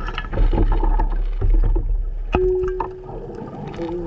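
Underwater noise on a dive camera: a low rumble of moving water with scattered crackles and clicks of bubbles, and a short steady tone a little past halfway.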